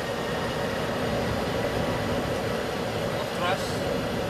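Boeing 737-900ER's CFM56-7B engines at takeoff thrust, with the rumble of the wheels rolling down the runway: a steady noise heard inside the cockpit during the takeoff roll. A brief rising sound comes about three and a half seconds in.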